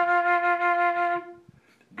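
Concert flute holding one steady F, the note in a descending C major scale fingered by adding the right-hand index finger; the note stops about a second and a quarter in.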